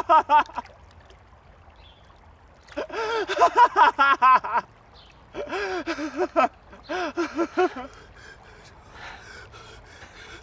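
A man's voice making wordless strained cries and gasps in four short bursts, with quiet gaps between them.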